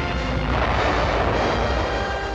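A large explosion, like an artillery shell burst, bursts in suddenly and its noise carries on with a heavy deep low end. Music plays beneath it.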